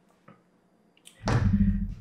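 An Accuracy International AX rifle set down on a wooden tabletop: a faint knock early, then a heavy thump and short clatter a little after a second in.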